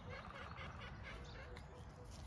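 A faint, rapid run of calls from a distant bird, over a quiet outdoor background.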